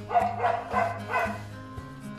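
A dog barking about four times in quick succession over background music with steady sustained notes.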